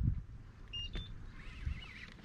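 Fishing reel being wound against a hooked bass, a faint wavering whirr with a click, over a low rumble of wind on the microphone.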